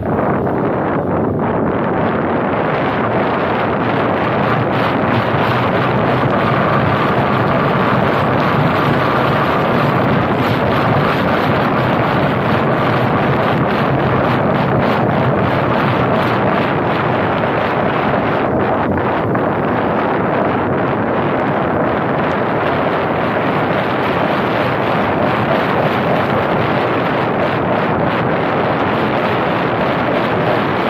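Steady wind rushing over the microphone of a roof-mounted camera on a moving car, with road noise from the car underneath.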